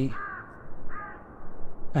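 A crow cawing twice, two short arched calls a little under a second apart.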